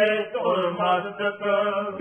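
A man reciting Gurbani verses in a slow, melodic chanting voice, holding and bending drawn-out syllables.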